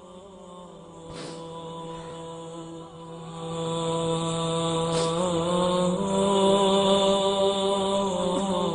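A wordless vocal drone: voices humming a long held chord, chant-like, that steps to a new pitch twice and grows louder about halfway through. Two short breathy noises cut across it, one about a second in and one near the middle.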